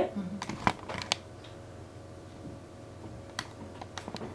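A few sharp light clicks in a small room: three in the first second and two more near the end, over a faint steady hum, after a brief vocal 'hee' at the start.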